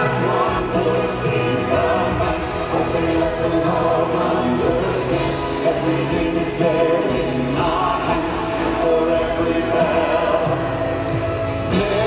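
Live rock band and choir playing on, the voices singing long held notes over the band.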